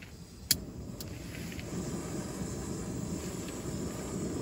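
Piezo igniter of a small canister-top backpacking gas stove clicking twice, about half a second apart, then the burner lighting and running with a steady low rush of flame.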